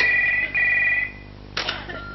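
Telephone ringing with a double ring: two short rings in quick succession, together lasting about a second.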